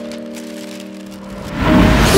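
A held music chord fades out. About one and a half seconds in, a loud splash of water rushes in, as someone is knocked into a puddle.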